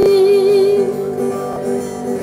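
A boy singing a long held note with a slight vibrato over his strummed acoustic guitar. The note ends about a second in and the guitar carries on alone.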